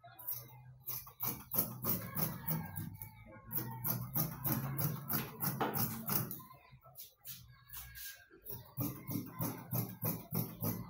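Dressmaking shears snipping through trouser fabric on a cutting table: a run of quick, sharp snips, with a short lull about two-thirds of the way through before the cutting picks up again.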